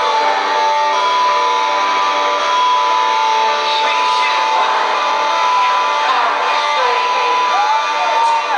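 Live rock band's electric guitar intro, sustained ringing notes, recorded loud from among the audience, with crowd voices and cheering over it.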